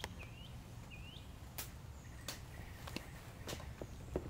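Quiet outdoor ambience: a bird gives a few short chirps in the first second or so, then a few sharp clicks and taps from hand work on the four-wheeler's wiring, over a low steady rumble.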